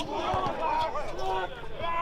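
Men's voices talking, at times over one another.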